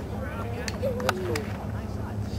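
Shouting voices of lacrosse players and spectators across an open field, with a few sharp clicks about a second in, over a steady low hum.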